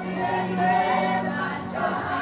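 Live gospel choir singing a worship song, many voices together.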